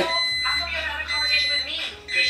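Microwave oven beeping at the end of its heating cycle: long, steady, high beeps, about one a second, with a woman's voice over them.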